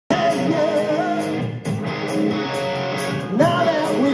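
Hard rock band playing live: distorted electric guitars and drums under a male lead singer's vocal, heard from the audience floor.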